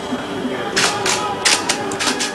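A quick, uneven run of short sharp noises, about five in the last second.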